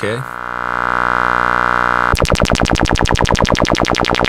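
Modular synthesizer tone held steady for about two seconds, then the Erica Synths Black LFO's modulation comes in and chops it into a fast, even pulsing of about ten beats a second: the LFO starting once the envelope's hold period has run out.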